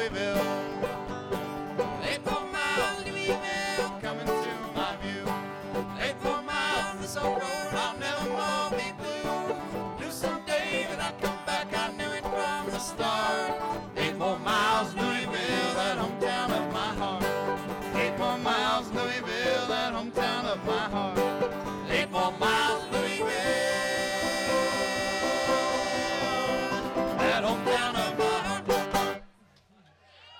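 Bluegrass trio of five-string banjo, mandolin and acoustic guitar playing an instrumental passage, ending the tune with a sudden stop near the end.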